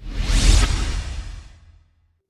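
Whoosh transition sound effect with a deep low rumble under it. It starts abruptly, swells for about half a second, then fades out over the next second or so.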